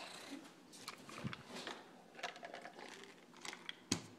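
Faint rustling handling noise with scattered light clicks, and one sharper click just before the end.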